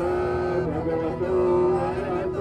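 Male voice chanting in long, drawn-out melodic notes, each held for about a second with short glides in pitch between them, in the style of Buddhist Pāli devotional chanting.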